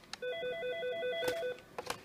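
Desk phone's electronic ringer sounding one ring burst of a little over a second, a fast warbling trill between two pitches, with a few sharp clicks before and after it.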